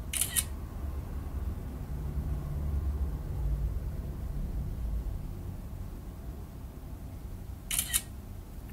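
Two brief noisy sucking sounds through a drinking straw, one at the very start and one near the end, over a low steady rumble.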